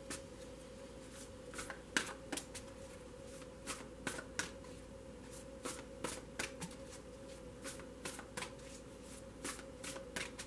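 A deck of tarot cards being shuffled by hand: quiet, irregular slaps and flicks of cards against each other, over a faint steady hum.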